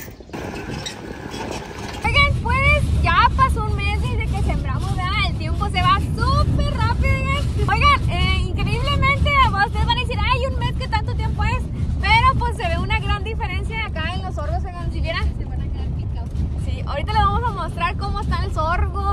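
Steady low rumble of a vehicle driving, heard from inside the cab, under a woman's voice.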